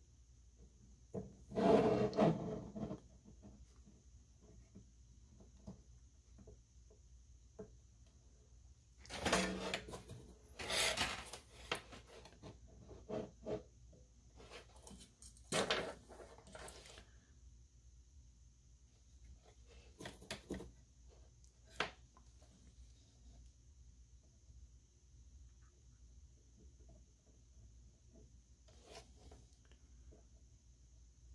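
Scattered handling noises as a small circuit board, its wires and a metal helping-hands clamp are handled and positioned on a wooden bench for soldering: short rubbing and scraping bursts with a few light clicks, the loudest about two seconds in.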